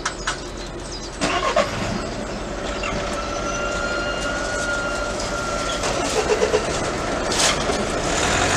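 Railway level-crossing barriers lifting: the barrier drive starts with a few clicks about a second in, then runs with a steady whine while the booms rise. Engines of waiting cars run underneath.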